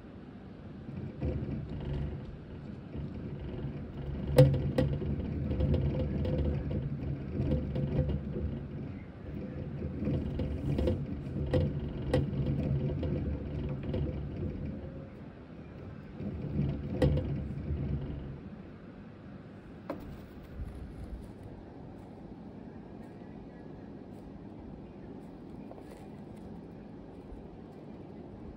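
Plastic hamster exercise wheel spinning with a steady low rumble and a few sharp clicks as a dwarf hamster runs in it. The rumble stops about two-thirds of the way through, leaving only faint ticks.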